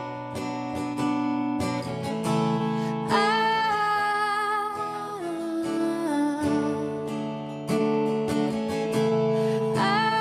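Acoustic guitar strummed steadily under a woman's voice singing long held notes, with new sung notes starting about three seconds in and again near eight seconds.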